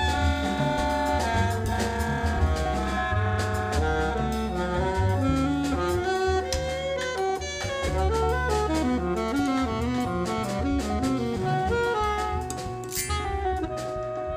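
Jazz quartet playing: an alto saxophone carries the melody over piano, double bass and a drum kit with cymbals.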